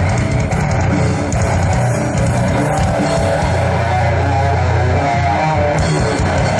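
Live metal band playing loudly and without a break: electric guitars and bass guitar over a drum kit.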